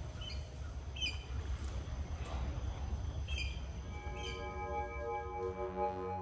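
Birds chirping in short calls, about four of them, over a steady low outdoor background noise. From about four seconds in, a sustained ambient synth music pad fades in.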